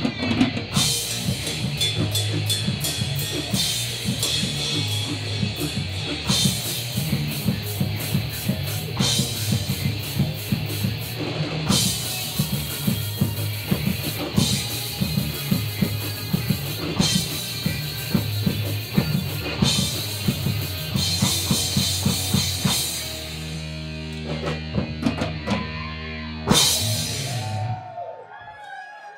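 Live rock band playing: drum kit with repeated cymbal crashes over electric bass and electric guitar. About 23 seconds in the drums drop out and a chord rings on, then one last crash and the music stops.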